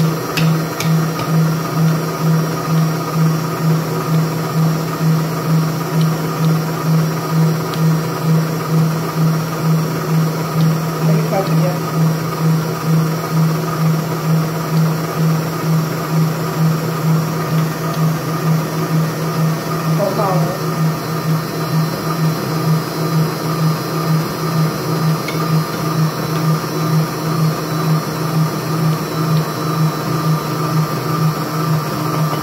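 Electric stand mixer running steadily, a loud hum with an even pulsing, as it beats egg batter for a sponge cake while the flour mixture is spooned in.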